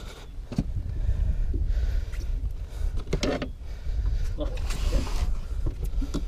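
Wind rumbling and buffeting on the microphone, unsteady and low, with brief voices over it.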